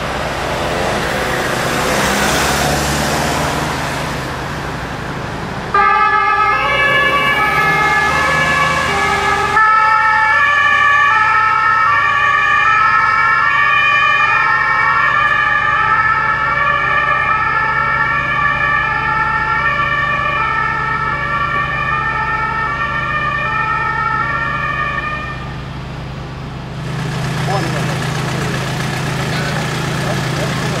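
German two-tone emergency-vehicle siren (Martinshorn) alternating between its high and low notes, starting about six seconds in and dying away a few seconds before the end. Vehicle engine and road noise lie under it and carry on on their own at the start and end.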